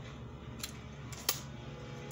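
Two short, light clicks about two-thirds of a second apart as a tarot card is handled and laid down on the table, over a faint steady hum.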